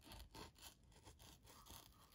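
Faint scraping of a folding knife blade working under the paperboard tuck flap of a playing-card box, cutting the seal in a few small strokes.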